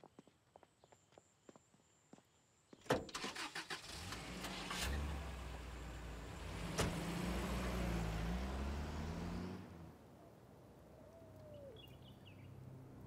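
A car door slams about three seconds in, then a vintage car's engine starts and runs with a low, steady rumble, with a second door slam midway; the engine sound drops away near the end.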